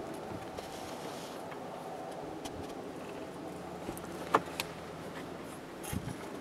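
A motor vehicle engine running steadily, a low even hum, with a couple of sharp clicks a little past four seconds in.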